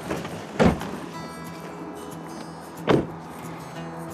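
Pickup truck doors being shut: two thumps, the first just over half a second in and the second near three seconds in, over quiet background music.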